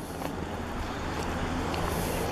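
A city bus engine idling steadily as a low, even hum, with a couple of faint clicks from footsteps.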